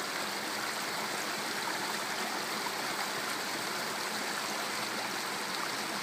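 A stream running steadily over rocks.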